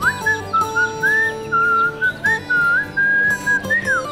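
A man whistling a tune in short phrases, the melody sliding up and down, over background music with sustained tones.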